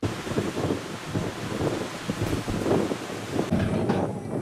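Wind buffeting the microphone: a steady rushing noise with irregular low thumps and gusts.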